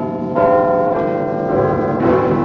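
Logo animation jingle: a loud, bell-like chime of many ringing tones that swells about a third of a second in and holds.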